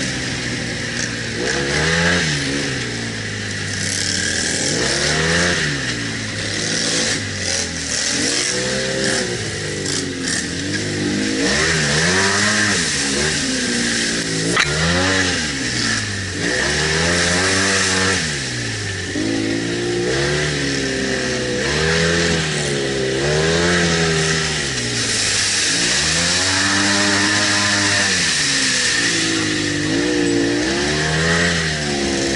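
ATV engine revving up and falling back over and over, roughly every two seconds, as the machine is throttled through mud and water holes.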